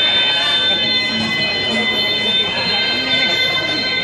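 A steady high-pitched whine of several held tones, unchanging throughout, over the murmur of people talking.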